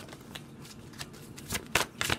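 Tarot cards being handled and laid on the table: a few short, soft card flicks and slaps, the two clearest about a second and a half in.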